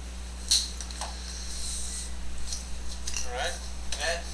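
Hobby knife cutting through a thin Depron foam sheet on a cutting mat: a sharp click about half a second in, then short scraping sounds near the end. A steady low electrical hum runs underneath.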